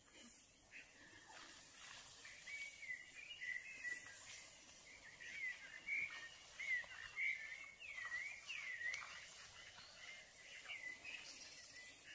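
Faint bird song: a run of short chirps and slurred whistled notes that starts about a second and a half in and fades out near the end, over a quiet outdoor hiss.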